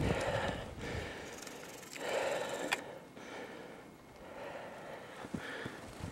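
A person breathing close to the microphone: three soft breaths about two seconds apart, with a small click near the middle.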